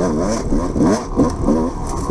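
Dirt bike engine heard up close from the bike, revving up and falling back about five times in two seconds as the throttle is worked on a trail.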